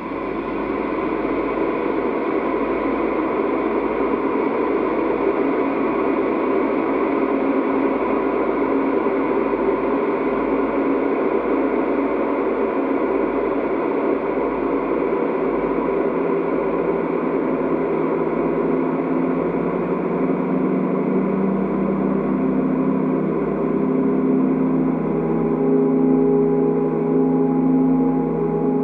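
Improvised ambient music from a piezo-amplified DIY metal noisebox and a Novation Peak synthesizer sent through delay and reverb: a dense, sustained metallic drone that starts suddenly and then holds steady. Steady low notes grow stronger in the second half.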